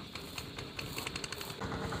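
A run of rapid, irregular clicks, then from about one and a half seconds in a steady motor hum with a fast low throb.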